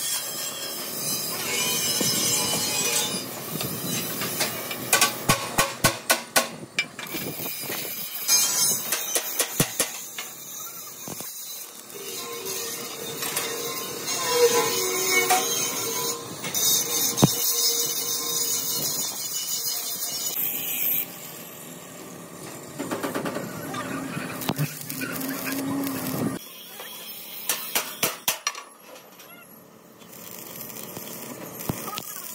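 Stick arc welding on sheet steel, a steady crackling hiss, broken by runs of quick, sharp metallic taps around six seconds in, again a few seconds later, and near the end.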